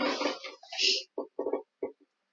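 A person's voice in short, indistinct syllables: a run of sound in the first second, then a few brief separate bursts.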